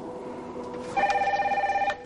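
Desk telephone ringing: one electronic warbling ring that starts about a second in and lasts about a second.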